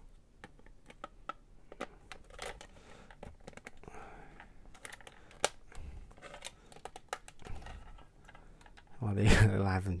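Hard plastic display-stand parts of a Bandai Metal Build 00 Qan[T] clicking and rattling as a clear plastic ring and a white support arm are handled and fitted onto the base: scattered small clicks, with one sharper snap about five and a half seconds in.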